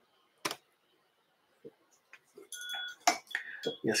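Small metal fly-tying tools (hackle pliers against the vise) clicking: one sharp click about half a second in, then a brief ringing clink and a few more light clicks in the last second and a half.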